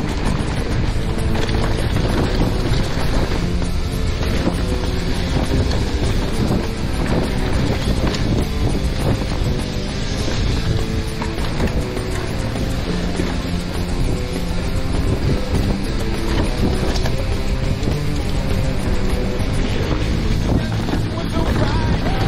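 Wind rushing over a helmet camera's microphone together with the tyre noise and chain and frame rattle of a mountain bike descending a dirt singletrack at speed, with music playing underneath.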